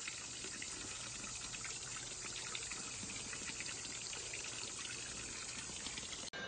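Water from a small garden fountain spout pouring in a thin stream into a stone-edged pool: a steady splashing trickle.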